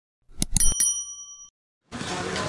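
Subscribe-button sound effect: a quick mouse click about half a second in, followed by a bright notification-bell ding that rings for just under a second and stops.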